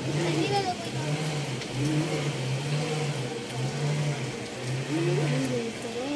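Steady hiss of light rain, with faint indistinct voices and a low hum that swells and fades about once a second.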